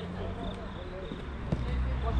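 A football being kicked on artificial turf, one sharp thud about one and a half seconds in, over faint distant shouts of players.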